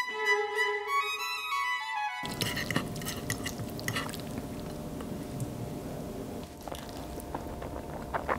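Violin music that cuts off abruptly about two seconds in, followed by soft clicks and scrapes of a fork twirling spaghetti on a plate.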